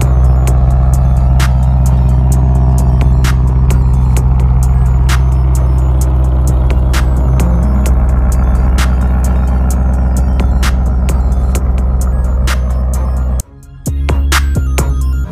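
Lamborghini Urus S twin-turbo V8 idling steadily at the exhaust, a constant low drone under background music with a regular beat. The engine sound drops out briefly near the end.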